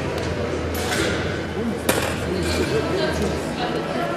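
Indistinct talking echoing in a large sports hall, with one sharp click about two seconds in.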